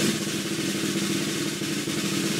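A snare drum roll, steady and even.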